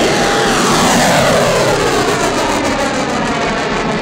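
Rocket motor firing at liftoff: a loud, steady roar, its tone sweeping slowly downward as the rocket climbs off the launch rail.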